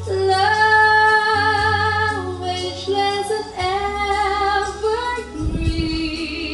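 A woman singing into a handheld microphone over backing music, holding two long notes.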